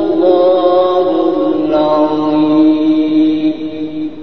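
A man's voice in melodic, drawn-out Quran recitation (mujawwad style), holding one long note that sinks slowly in pitch.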